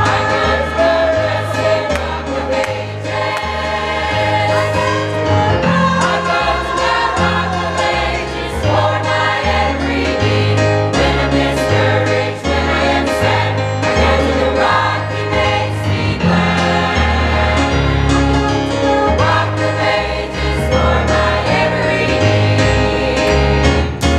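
Church choir singing a gospel song in full voice over accompaniment, with a low bass line moving from note to note about once a second.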